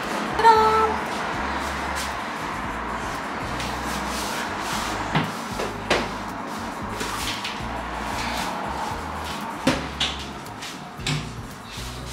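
Drawers of an IKEA Malm chest of drawers being slid in on their runners and pushed shut, giving several short knocks, over background music.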